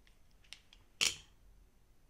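A few faint ticks, then one sharp click about a second in, as a small super glue bottle is handled at a fly-tying vise.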